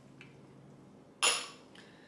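A single metallic clink from a stainless-steel bar jigger about a second in, with a short ring that dies away quickly.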